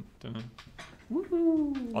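A person's voice making one drawn-out 'woo'-like call about a second in, rising sharply and then sliding slowly down in pitch, as a vocal transition sound.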